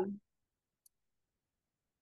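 Near silence: the last word of a woman's speech trails off right at the start, then dead silence broken once by a faint, tiny high click about a second in.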